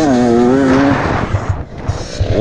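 Dirt bike engine revving up sharply and holding a high, steady note. About halfway through the throttle is shut and the engine note drops away, leaving a quieter rumble.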